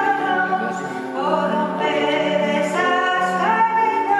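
Singing with grand piano accompaniment: long held notes that move from one pitch to the next every half second to a second.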